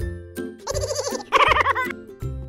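Background music with a steady bass beat. About halfway through, two wavering, bleat-like cries sound over it, one after the other.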